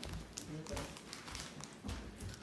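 Faint kitchen handling sounds: scattered light knocks and taps, with a soft thud near the end.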